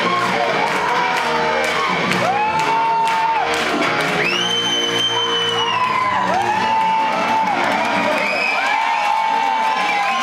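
Live brass-band music with drums, sousaphone and horns, with the crowd cheering and several long whoops that rise, hold and fall.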